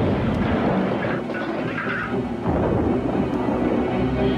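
Rumbling thunder sound effect over music, from an old TV commercial's soundtrack.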